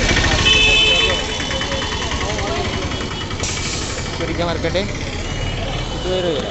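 Atul auto-rickshaw engine running close by with a rapid low throb, which drops away after about a second, leaving crowd voices.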